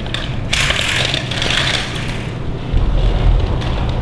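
A sliding glass patio door being opened, with a grating, rattling roll along its track about half a second in that lasts over a second, followed by a low rumble near the end.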